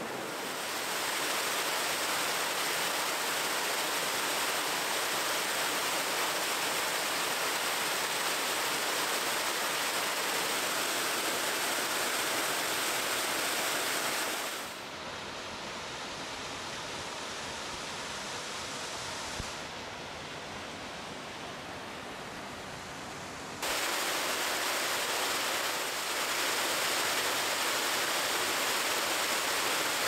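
Steady rush of water from a small cascading creek waterfall. It drops quieter about halfway through and comes back up near the end.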